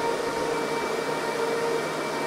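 HPE ProLiant DL560 Gen10 rack server's cooling fans running at a steady rush with a whine in several pitches; the lowest whine tone fades out near the end.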